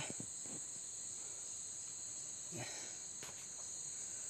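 Forest insects keep up a steady, unbroken high-pitched buzz, with a few faint soft rustles or steps now and then.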